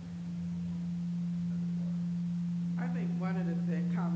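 Low feedback tone from a public-address system: one steady pitch that swells over the first second and then holds. A voice starts talking near the end.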